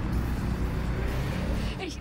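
Steady low rumble of a motor vehicle running nearby, as outdoor traffic ambience.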